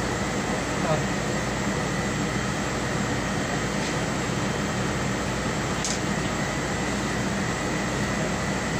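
A steady mechanical hum with a rush of air and a thin high tone running under it, the sound of machinery or a blower running without a break. There is a faint click about six seconds in.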